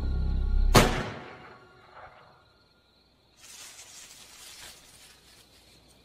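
Suspense film score: a low droning music bed that ends on a sharp hit about a second in, then fades. After a short near-silent pause, a soft rustling noise starts around the middle and carries on.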